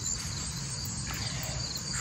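Crickets trilling steadily in a high, continuous insect chorus, with a low rumble underneath.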